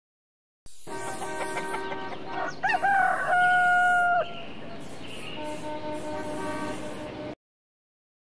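A rooster crowing: a bending, rising call that settles into one loud held note about three to four seconds in. It plays over a quieter steady background of several held tones, and the whole sound starts and cuts off suddenly.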